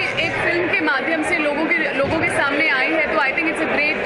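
A woman speaking continuously, with other voices chattering around her.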